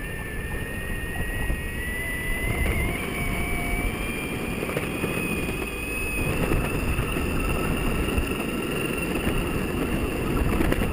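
Electric longboard riding on tarmac: steady wheel rumble and wind on the microphone, with a thin electric-motor whine that rises in pitch over the first six seconds or so as the board gathers speed, then holds steady.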